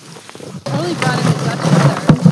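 Flower bulbs clattering and rushing into a wheelbarrow, poured from a bucket and stirred by hand; the loud pouring starts suddenly about two-thirds of a second in.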